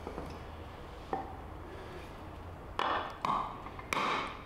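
Three knocks of a hammer on a wooden block held over a motorcycle steering stem clamped in a vise, driving the new tapered-roller lower steering-head bearing down onto the stem; a faint click about a second in.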